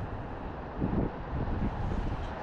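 Wind buffeting the microphone: a steady low rumble that swells in a gust about a second in.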